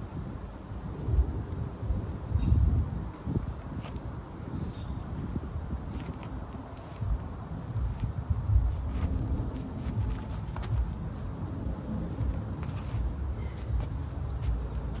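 Wind buffeting the microphone in gusts, a rumble that swells about a second in, around two and a half seconds and again past eight seconds. A few short scuffs from movement sound through it.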